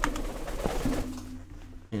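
A pet parrot calling for attention: a short, low, steady note about a second in.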